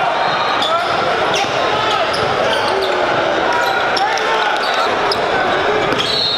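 Live gym sound of a basketball game: a basketball bouncing on the hardwood court and sneakers squeaking, over the steady chatter of many spectators' voices.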